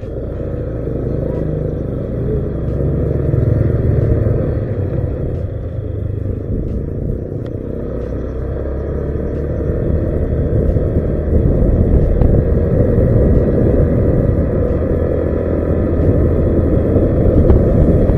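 Honda Vario scooter riding along, heard as a dense low rumble of wind on the camera microphone over engine and road noise, growing louder as it gathers speed.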